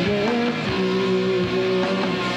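Rock band playing live, led by guitars over drums, with a long held note through the middle.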